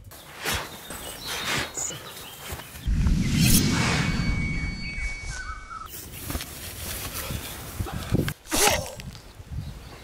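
Outdoor location sound from a staged fight: rustling and scattered knocks of movement, with birds chirping faintly. About three seconds in a louder low rumble sets in and fades over a couple of seconds.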